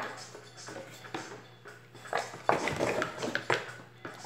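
A plastic stirrer working through a basin of thick liquid soap mixture: faint stirring at first, then a run of sloshes and knocks against the plastic basin in the second half.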